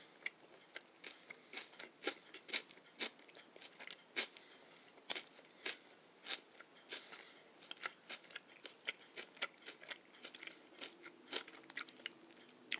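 Close-up chewing of a mouthful of jerk chicken salad with raw bell peppers and red onions: faint, irregular crisp crunches, one or two a second.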